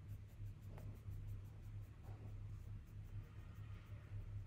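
Paintbrush bristles stroking gouache onto sketchbook paper: faint, quick, scratchy brushing, with a steady low hum underneath.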